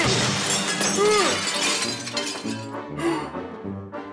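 A sudden shattering crash that rings and fades away over about two seconds, over background music.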